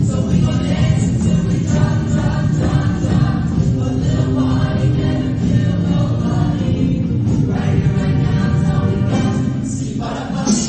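A show choir of mixed voices singing together with instrumental accompaniment.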